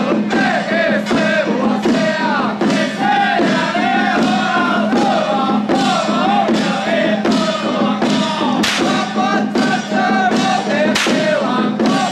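A group of men chanting in unison while beating small hand-held drums with sticks, a steady beat of strikes a little under two a second.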